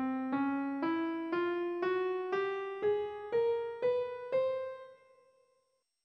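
Piano playing the nine-tone scale 3571 (Dyrygic) upward one note at a time, about two notes a second, from middle C to the C an octave above: C, D♭, E, F, F♯, G, G♯, A♯, B, C. The top note rings on and fades out.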